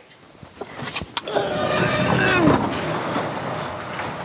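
Sectional garage door pushed up by hand: two sharp clicks about a second in, then a rumbling roll up its tracks that swells and slowly fades.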